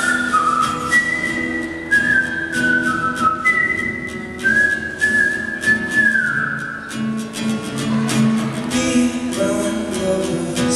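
A man whistles a stepping melody into a microphone over a strummed acoustic guitar. The whistled line ends with a downward slide about six and a half seconds in, and the guitar strumming carries on alone after that.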